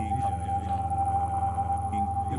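Modular synthesizer playing electronic music: a steady high tone held over a low hum, with gliding, warbling tones near the start.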